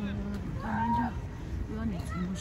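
People talking, their voices drawn out on long, nearly level-pitched syllables, over a steady low outdoor rumble.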